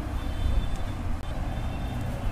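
A low, steady rumble, with a faint thin high tone that comes and goes.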